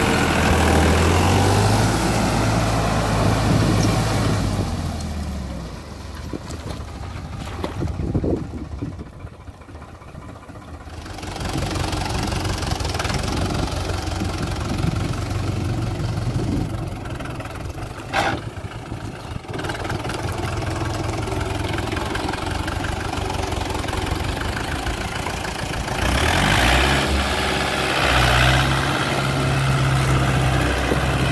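Diesel tractor engine working under load in deep mud. It runs strongly at first, falls back for several seconds, then picks up again and is revved harder near the end as the tractor churns through the mud.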